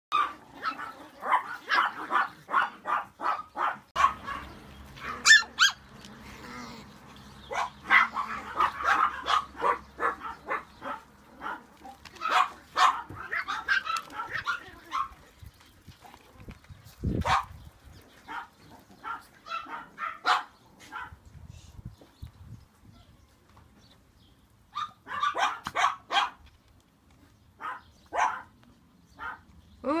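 Small dogs barking in quick repeated bursts, about four barks a second at the start, pausing briefly now and then before starting up again.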